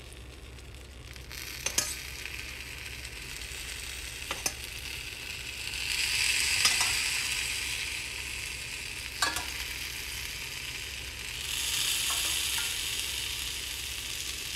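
Sugar syrup ladled onto a tray of hot baked kataifi nests, sizzling as it hits. The sizzle swells about six seconds in and again near the end, with a few light knocks in between.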